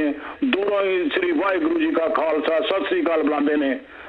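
Speech only: a person talking steadily, with a brief pause just after the start.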